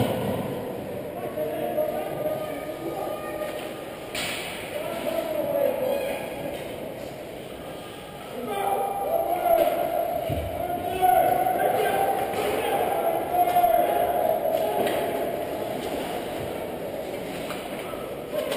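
Ice hockey game in an echoing indoor rink: unintelligible shouting voices, louder from about halfway through, with sharp knocks near the start and about four seconds in and a low thud about ten seconds in.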